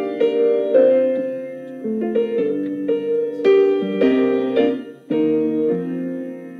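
Piano playing the slow introduction to a song, chords struck about every half second and left to ring, with a brief lull about five seconds in.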